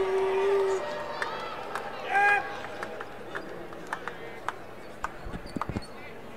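Basketball arena ambience during warm-ups: a long held vocal note ends about a second in, a short loud voiced call comes about two seconds in, then scattered sharp clicks and a few low thumps from the court.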